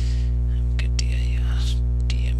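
Steady electrical mains hum with its overtones, under a few keyboard key clicks as a command is typed. A soft, breathy, whisper-like sound comes about a second in.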